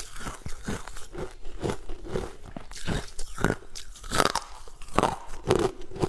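Close-up crunching and chewing of a thin sheet of ice, with short crunches about two a second.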